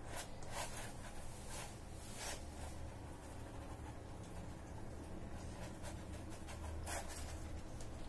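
Faint scratching of a paintbrush working acrylic paint across a canvas, a few scattered strokes over a low steady room hum.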